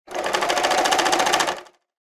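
Sewing machine stitching: a rapid, even run of needle strokes that starts at once, lasts about a second and a half and stops.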